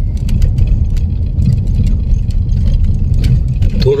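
Car cabin noise while driving on an unpaved dirt road: a steady low rumble of engine and tyres, with scattered light clicks and rattles.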